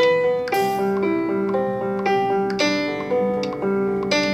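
Looped keyboard accompaniment playing back through the PopuPiano app: sustained electronic chords over a simple bass line, changing chord about once a second, with a sharp bright hit at some of the changes.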